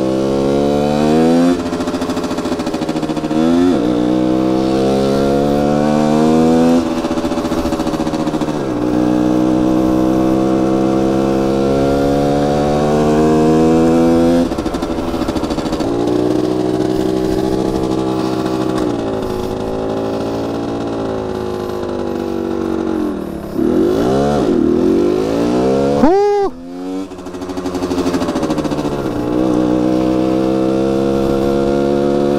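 Rieju MRT 50's 50 cc two-stroke engine under way, its pitch climbing as it pulls and dropping back at each gear change, several times over. Near the end it falls to a low run and a quick rev blip rises and falls sharply.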